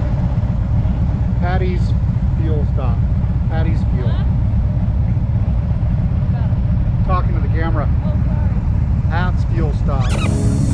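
Motorcycle engine idling with a steady low rumble, with muffled voices talking over it at times.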